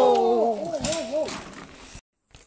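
A person's drawn-out "whoa" that wavers up and down in pitch and trails off about halfway through, with a couple of faint knocks.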